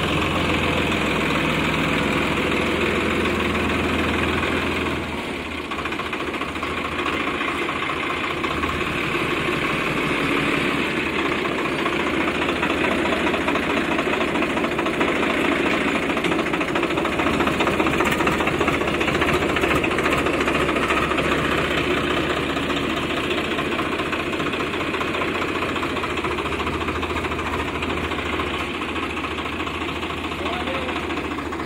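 Swaraj 855 FE tractor's three-cylinder diesel engine running steadily close by as the tractor moves with a loaded gravel trailer. The level dips briefly about five seconds in, then the engine carries on.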